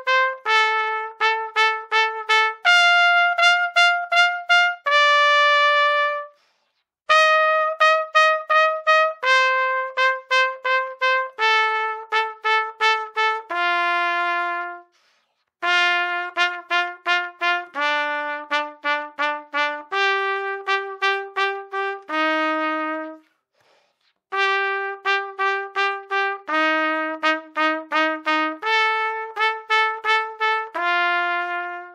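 Trumpet played with slow, deliberate double tonguing: quick, even runs of repeated notes, several on each pitch, stepping from pitch to pitch. It plays in three phrases that each end on a longer held note, with short breaks for breath between them.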